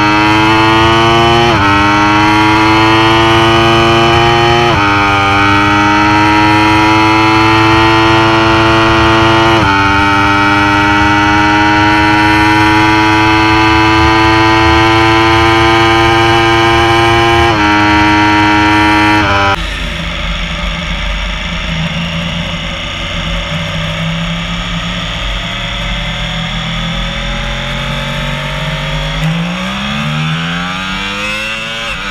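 Yamaha R1's crossplane inline-four at full throttle, its pitch climbing steadily through the gears, with four quick upshifts that each drop the pitch. About two-thirds of the way in the engine note falls away abruptly to a quieter, lower drone with wind rush. Near the end a motorcycle engine starts revving up in low gear.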